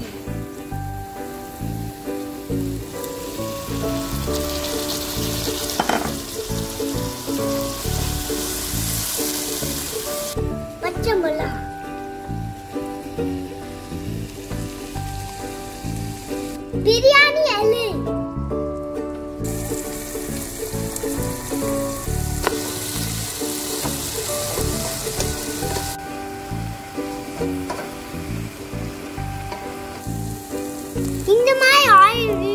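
Mutton, onions and tomatoes frying in a non-stick pot, sizzling in stretches as a wooden spoon stirs them, with background music underneath.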